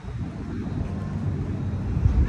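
Wind buffeting the phone's microphone outdoors: an irregular low rumble.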